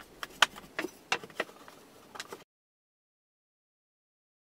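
Wooden boards knocking and clicking against each other as the loose pieces of a box are dry-fitted by hand, about six short sharp knocks. The sound cuts off abruptly to silence a little past halfway.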